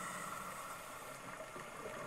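Faint, steady background hiss with a thin, steady high tone running through it.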